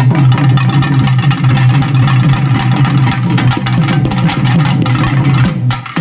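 Double-headed barrel drum beaten with a stick in a rapid, continuous folk rhythm, with a strong low boom under the strokes. The playing dips briefly at the very end.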